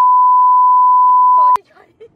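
Censor bleep: a single loud, steady beep tone masking a swear word, cutting off abruptly about one and a half seconds in.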